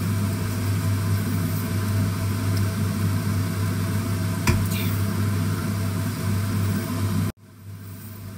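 Minced pork sizzling in a stainless steel frying pan as a spatula stirs it, over a steady low hum, with a single sharp knock about halfway through. The sound cuts off suddenly near the end.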